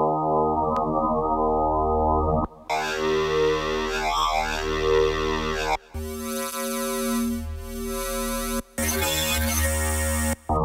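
Korg Electribe Wave wavetable synth app on an iPad, holding a sustained pitched sound whose tone jumps abruptly between sections as different wavetables are selected. It starts muffled and turns much brighter about two and a half seconds in, then changes twice more.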